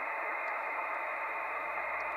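Steady static hiss from an amateur HF radio receiver's speaker. The receiver is on an open voice channel with no signal, waiting for the distant station to answer.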